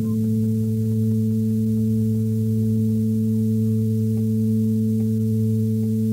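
Experimental analog electronic music played on self-built instruments: a steady, unchanging drone of low held tones stacked in octaves, with faint wavering squiggles of higher pitch over it.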